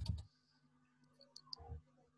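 A sharp knock right at the start, then a few small clicks and a short soft bump, typical of a computer mouse or desk being handled near a microphone, over a faint steady electrical hum.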